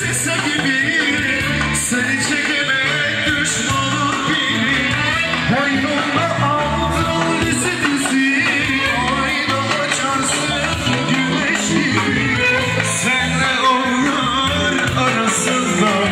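Band music with a singer, played loudly and without a break.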